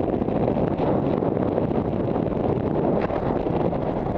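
Steady wind rushing over a helmet camera's microphone during a descent under an open parachute canopy.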